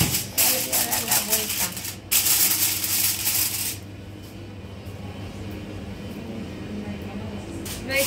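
Aluminium foil crinkling and crackling as it is folded and crimped over a baking dish, for about four seconds, with a short break about two seconds in. After that it drops to a few faint rustles.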